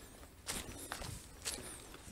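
Footsteps of a hiker walking on a dirt trail covered in dry leaves, about three steps half a second apart.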